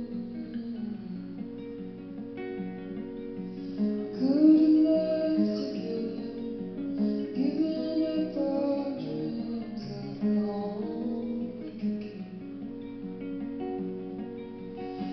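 A woman sings over a plucked acoustic guitar. The guitar plays alone at first, and the voice comes in about four seconds in, in several sung phrases.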